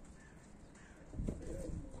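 Domestic pigeons cooing low. The cooing comes in a little past halfway through, after a quiet first second.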